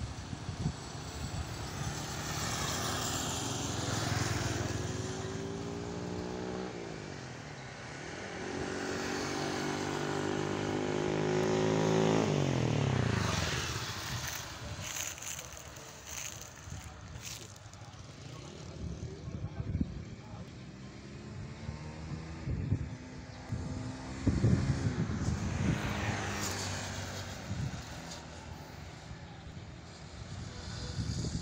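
Motor vehicles passing on the road, their engine hum sweeping down in pitch as each goes by: the loudest pass peaks about 12 seconds in. Afterwards the traffic is fainter, with scattered short bumps.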